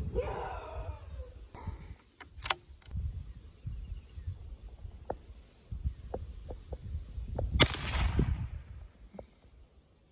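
A single rifle shot about three quarters of the way through, its report dying away over about a second. Before it come low knocks and rustles and a sharp click.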